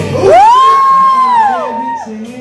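A high, loud "woo" whoop: the voice slides up, holds, then falls away, with a second voice overlapping it near the end, over backing music.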